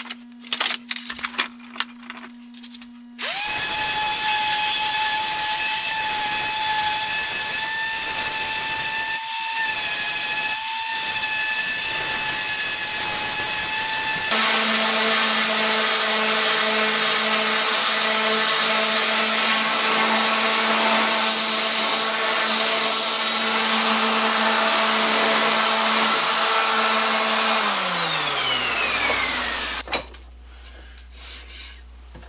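A hand-held random orbital sander sands a hickory handle. After a few handling clicks, it switches on about three seconds in and runs steadily with a whining motor note. About halfway through, the note shifts to a lower steady hum. Near the end it winds down, falling in pitch, and stops.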